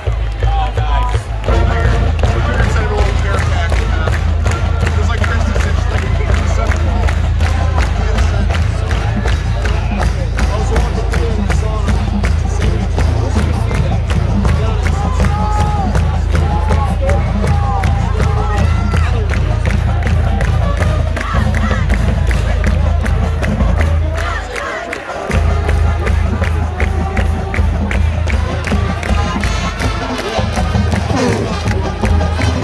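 Combined high school and middle school marching band playing a brass-and-drumline piece with a driving beat, with crowd noise from the stands. The music breaks off for about a second near the end, then comes back in.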